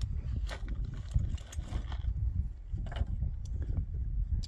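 Low rumble of wind on the microphone, with several sharp clicks and knocks from a backpack's straps and plastic buckles being handled as the pack is taken off and set down.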